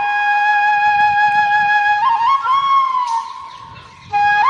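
Background flute music: one long held note, then a short rising and falling phrase about halfway through that fades away near the end.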